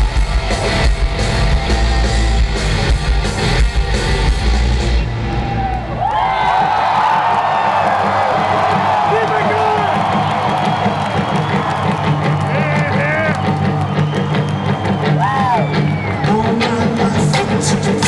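Live rock band in an arena. Drums, bass and distorted guitars play loud for about six seconds, then drop out into a quiet stretch of guitar, with crowd yells and whoops rising over it.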